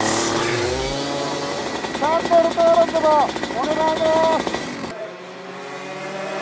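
Racing go-kart engine running, its pitch falling in the first second and then holding steady. About five seconds in it gives way to a quieter kart engine heard from trackside. A voice stretches out its words over the engine in two long phrases around the middle.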